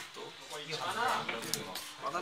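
Indistinct talking: a person's voice in the room, too unclear for words to be made out.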